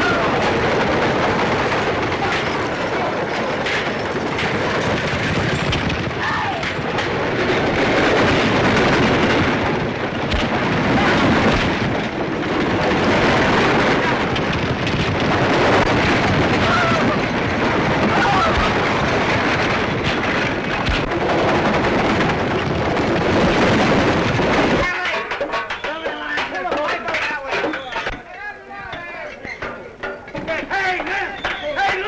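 A dense din of galloping horses and horse-drawn wagons rushing off, with shouting voices and film score music over it. The din drops sharply about 25 seconds in.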